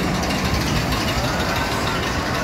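Amusement park background noise: a steady low mechanical rumble with faint distant voices over it.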